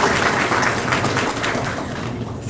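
Audience applauding, a dense patter of many hands clapping that eases off slightly toward the end.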